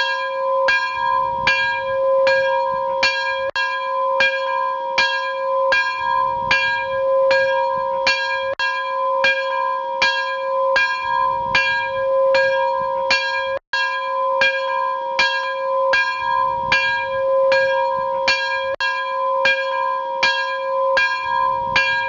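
A soundtrack of a bell-like tone struck about twice a second in an even, repeating pattern. The sound drops out briefly about 14 seconds in.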